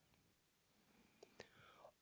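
Near silence: quiet room tone, with a couple of faint clicks a little past halfway.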